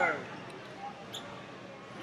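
Wrestling shoes squeaking against the mat, a short cluster of squeaks right at the start and a faint one about a second in, over the steady background noise of a large hall.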